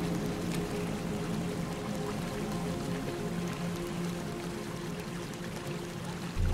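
Slow ambient music: soft held tones over a steady rushing noise bed.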